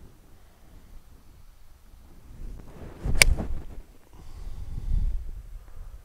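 Golf iron striking a ball off fairway turf: a single sharp click about three seconds in, followed by a low rumble.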